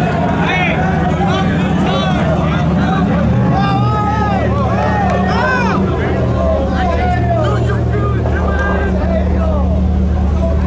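Pickup truck engine held at high revs during a burnout, a steady drone whose pitch steps up and down a couple of times, under a crowd's shouting and chatter.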